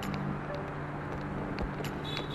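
Street traffic with a motor vehicle engine running steadily, picked up by a camera on a moving bicycle.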